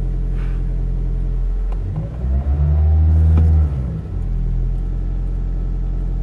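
Toyota Corolla Hybrid's petrol engine idling fast at about 1,300 rpm while cold, heard from inside the cabin. About two seconds in it is revved once, growing louder and rising in pitch, then falling back to idle about two seconds later.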